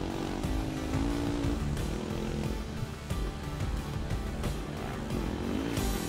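Background music mixed with rally motorcycle engines revving, their pitch rising and falling.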